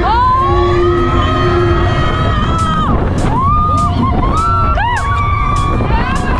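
A rider screaming on a roller coaster: several long, held screams that rise, hang, then drop away, over the steady low rumble of the moving train and wind buffeting the microphone.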